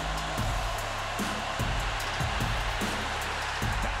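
Large stadium crowd roaring loudly and steadily, with band music and repeated drum hits underneath.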